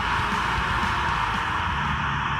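Steady hiss of radio static from an FM receiver with its squelch open, tuned to the ISS crossband repeater downlink. No signal comes through: static only, with no station heard.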